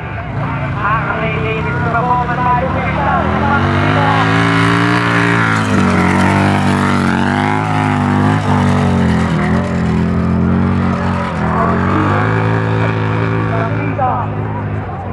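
Motorcycle engine revving hard under heavy load as the bike climbs a steep snow slope, its pitch rising, dropping sharply about six seconds in, then climbing again with another dip near the end.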